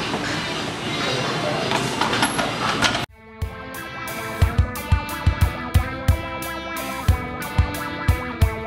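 Gym room noise with a few light metal clinks for about three seconds, then an abrupt cut to guitar-led background music with a steady drum beat.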